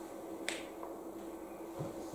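Quiet room tone with one sharp click about half a second in.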